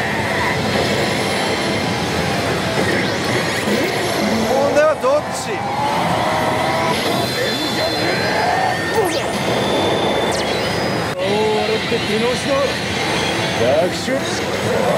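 Loud, steady pachinko-parlour din: a dense wash of many pachislot machines' music and electronic effects. Short gliding effects and voice snippets from the Oh! Salaryman Bancho machine sound over it as its screen animation plays.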